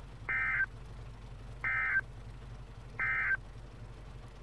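Three short bursts of EAS/SAME digital data tones over NOAA Weather Radio, about 1.3 s apart: the End of Message code that closes the tornado warning broadcast. A low steady hum runs underneath.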